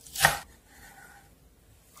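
A chef's knife chopping through chives onto a wooden cutting board, a single stroke just after the start.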